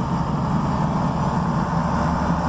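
Steady engine and road drone of a Dodge Ram pickup truck driving, heard from inside the cab.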